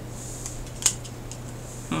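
A single sharp click as a tarot card is set down on a wooden tabletop, over a steady low hum. A voice begins at the very end.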